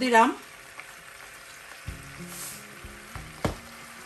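Ghee sizzling faintly in a steel stockpot while a silicone spatula stirs, with a few light clicks of the spatula against the pot in the second half.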